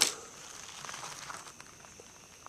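Quiet outdoor background: a faint, steady, high insect drone, with light crackling steps on gravel in the first half.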